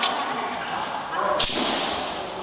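A single sharp crack about one and a half seconds in, with a short echo after it, over a steady background hiss and faint voices.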